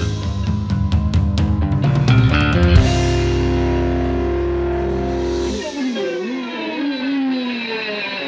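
Fusion band track with a Sonor drum kit: a busy drum fill over bass and guitar, then about three seconds in the band holds one long chord with cymbals ringing. Near the end the bass drops away, leaving a wavering, bending lead line.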